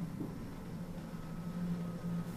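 A steady low hum over a light even hiss, with no sudden events.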